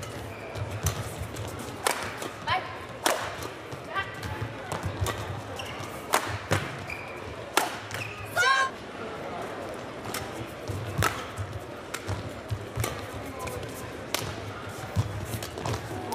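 Badminton rally: sharp racket strikes on the shuttlecock at irregular intervals, with court shoes squeaking on the floor a little past halfway, over a steady arena background.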